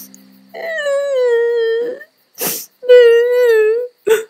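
A cartoon duckling's voice crying: two long, wavering wails with a sharp sobbing breath between them.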